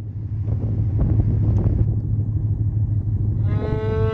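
Steady low drone of a ferry's engine with wind buffeting the microphone on the open deck. Music fades in near the end.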